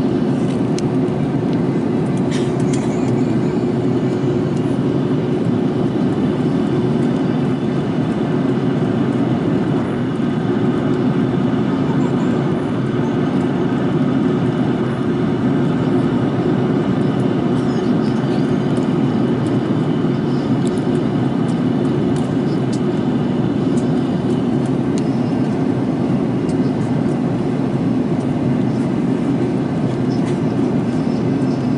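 Steady jet airliner cabin noise in flight, engines and rushing air heard from a window seat over the wing, as an even low rumble with a faint steady hum.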